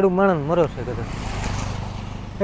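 A motorcycle passing on the road: engine and tyre noise swells to a peak about a second and a half in, then eases off. A man's voice is heard briefly at the start.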